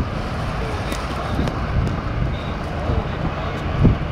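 Outdoor ambience: a steady low rumble with irregular buffeting, like wind on the microphone, and no clear engine note or voices standing out.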